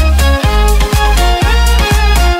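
Violin playing a pop-song melody over a dance backing track, with a kick drum about twice a second.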